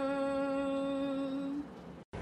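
An older woman's voice holding one long, steady note of chanted raivaru, traditional Dhivehi verse, which ends about one and a half seconds in.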